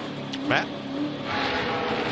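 Onboard sound of a Toyota NASCAR Cup car's V8 running at moderate revs while braking down pit road at pit-road speed. A rushing noise swells about a second in.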